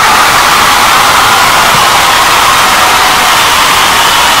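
Loud, steady TV-style static hiss, a digital noise effect accompanying a glitch transition in the picture.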